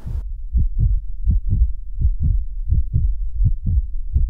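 Heartbeat sound effect: paired lub-dub thumps, steady at about one pair every three quarters of a second, starting a moment in.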